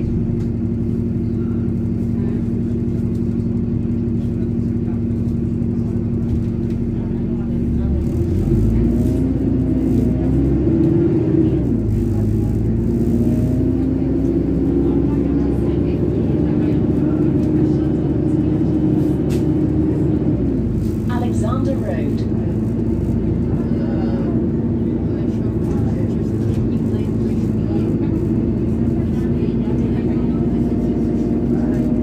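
Diesel engine of an Alexander Dennis Enviro400 double-decker bus heard from inside the saloon: running low and steady, then pulling away about eight seconds in with the pitch rising through the gears. It holds higher, falls back around twenty seconds in as the bus slows, and settles low again.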